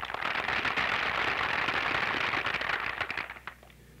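Audience applauding for about three seconds, then dying away.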